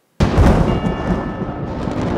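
A sudden, loud, deep rumbling hit from a film soundtrack, with held musical notes sounding over the rumble about half a second later.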